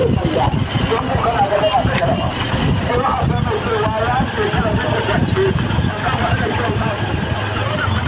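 Armored police vehicles' engines running as a convoy moves past at close range, a steady low rumble under people's voices talking and calling.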